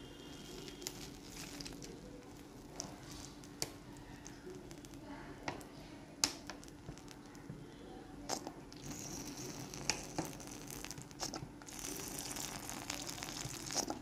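Milk simmering in a wide steel pan, giving a faint bubbling crackle with scattered small clicks and a soft hiss that comes and goes in the second half, over a steady low hum.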